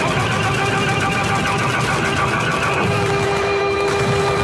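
Dubbed-in anime fight audio: shouted 'ora ora ora' and 'muda muda muda' battle cries in a rapid barrage with quick repeated hits, over music. A held note sets in about three seconds in.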